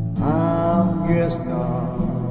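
Wordless sung vocal over acoustic guitar: a male voice comes in about a fifth of a second in and holds a bending, melismatic note across the chords.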